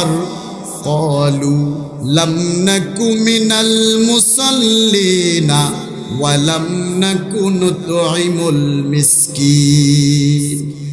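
A man's voice chanting a Quran recitation (tilawat) in long, melodic held notes with gliding ornaments, pausing briefly for breath between phrases, amplified through microphones.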